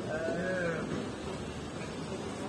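A single drawn-out vocal call lasting under a second, its pitch rising slightly and then falling, over steady street background noise.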